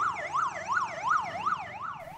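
Police escort siren in a fast yelp, its pitch sweeping up and down about three times a second.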